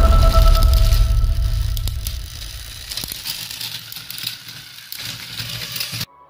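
Battery-powered TrackMaster toy train motors running and their wheels grinding on plastic track as two engines push against each other, with rattling clicks. The rumble is loudest at first and fades after about two seconds.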